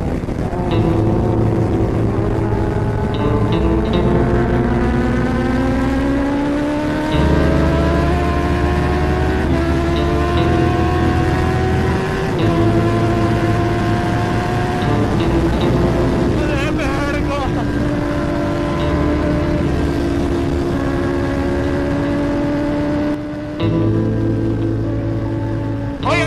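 Kawasaki ZX-10R superbike's inline-four engine pulling hard at high speed, its pitch slowly climbing and dropping back at each upshift. Background music plays over it.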